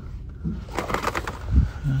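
Light clicks of cardboard blister-card packages knocking on metal pegboard hooks as a carded toy car is handled, then a brief low bump.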